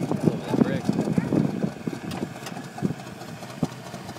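People talking and laughing over the 1951 International pickup's engine, fitted with a 3/4 race cam, running in the background; a few sharp clicks come in the second half.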